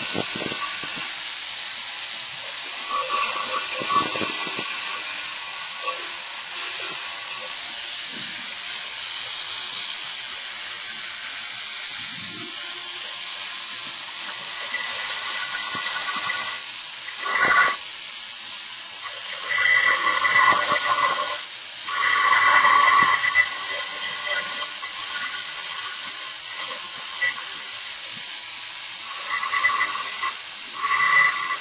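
Dremel rotary tool with a carbide bit running and grinding locating notches into the edge of an Ultracal gypsum-cement mold. The sound holds steady through the first half, then swells in several louder bursts of grinding in the second half and again near the end.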